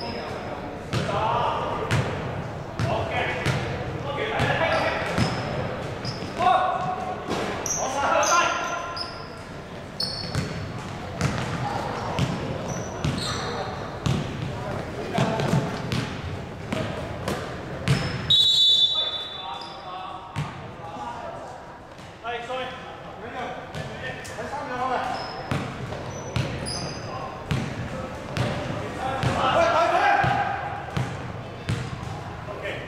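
A basketball being dribbled and bouncing on a wooden indoor court during a game, with players' voices calling out in a large hall.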